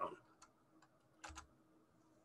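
Near silence broken by a few faint clicks, with a pair of them about a second and a quarter in.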